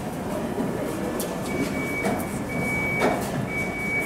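Caster wheels of hand-pushed equipment carts rolling and rattling over a concrete floor, with a few sharp knocks. From about a second and a half in, an electronic beeper sounds about once a second.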